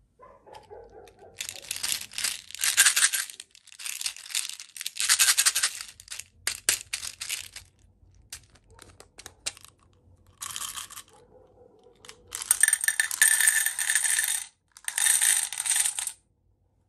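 Small plastic beads rattling inside a plastic toy baby bottle in several loud bursts, with a few small clicks around the middle as its cap is twisted. Near the end the beads pour out into a metal muffin tin in two long bursts.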